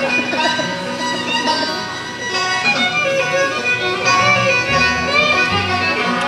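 Live bluegrass band playing: a fiddle leads with sliding, bowed notes over strummed acoustic guitars.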